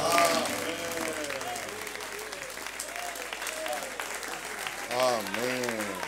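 Congregation clapping hands together, with several voices calling out over the applause. The clapping is loudest at the start and thins out; a single voice calls out more loudly about five seconds in.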